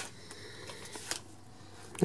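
Faint handling of trading cards being drawn from an opened booster pack, with a soft tap about a second in.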